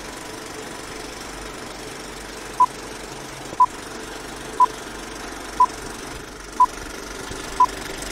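Old-film countdown leader sound effect: a steady film-projector rattle and hiss, with a short, high beep once a second starting about two and a half seconds in, six beeps in all.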